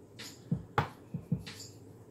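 Drum loop from a Roland SP-555 sampler playing quietly: a few separate kick and snare hits, the kicks low with a short falling tail.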